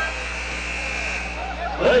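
Arena buzzer, a steady multi-tone blare marking the end of the first half, cutting off right at the start, leaving the steady murmur of the arena crowd.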